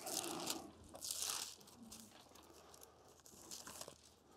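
Thin Bible pages rustling as they are turned by hand, with two rustles in the first second and a half, then fainter small page sounds.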